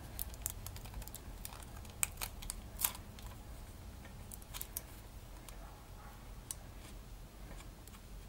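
Faint handling sounds of adhesive tape and wire being pressed onto a cardboard tube by hand: a run of small sharp clicks and crackles in the first three seconds, then only a few. A steady low hum lies underneath.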